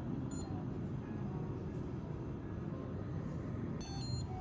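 Short high electronic beeps from a vending machine's touch-screen payment terminal, one about a third of a second in and another near the end, over a steady low hum.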